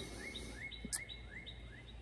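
Faint bird calling: a steady series of short, rising chirps, about four a second. One brief click about a second in.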